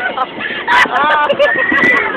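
Several riders on a fairground ride laughing and shrieking at once, with one long high scream near the end.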